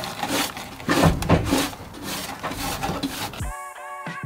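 Irregular rubbing, scraping and knocking sounds of hand work. Music with a beat starts about three and a half seconds in.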